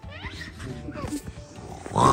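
Small children making wordless, playful squeals and vocal sounds, with music underneath.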